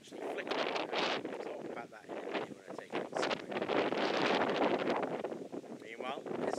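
Gusty wind buffeting the microphone, swelling and dropping unevenly and strongest about four to five seconds in.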